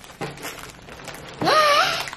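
Quiet rustling of the kit's box and packaging being handled, then in the last half-second a short, high-pitched vocal sound that rises in pitch.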